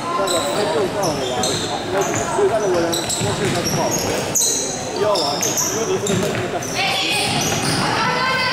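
Indoor youth futsal play in a hall: sneakers squeaking again and again on the wooden floor and the ball being struck, with players and coaches shouting throughout.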